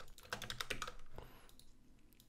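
A few faint keystrokes on a computer keyboard, thinning out in the second half.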